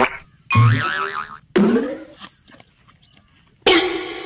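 Short comic sound effects dropped in one after another with gaps between: a wobbling, boing-like tone about half a second in, a sliding tone just after, and another brief effect near the end.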